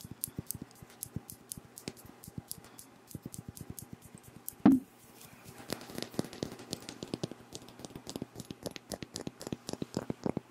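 Fingernails tapping and scratching on a glass perfume bottle close to the microphone, a quick irregular run of small sharp clicks. About halfway through there is one loud low thump, the loudest sound here.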